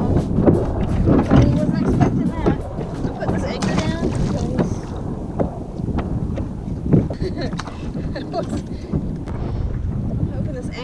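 Wind buffeting the microphone and water slapping against a kayak hull, with scattered clicks and knocks throughout.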